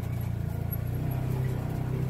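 Side-by-side UTV engine running steadily as it drives along a dirt trail, heard from the seat; its note shifts slightly about a second in.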